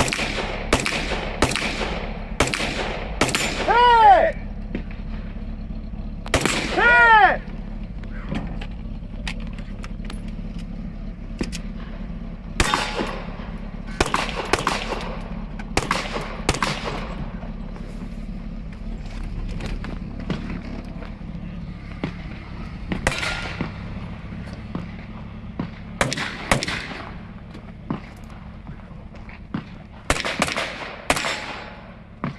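Gunshots in quick strings from a competitor working through a 3-gun stage, opening with an AR-style rifle. The two loudest moments, about four and seven seconds in, each carry a falling whine.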